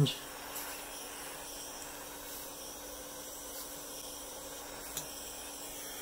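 Steady hiss of a lit butane soldering iron's burner, with a faint steady hum under it and one small click about five seconds in.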